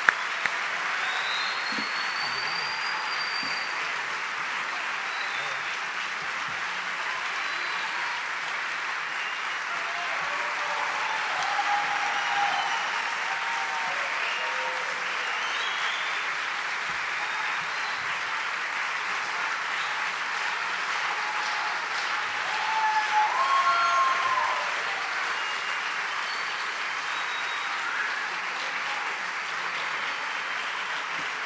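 Audience applauding steadily throughout, with scattered whistles and shouts over the clapping and a louder cheer about three quarters of the way through.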